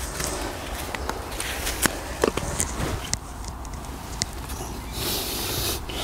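Hands working loose soil and small plastic plant pots while seedlings are planted: rustling and scraping of earth, with a few light clicks and taps, and a longer scrape near the end as the soil is firmed around a plant.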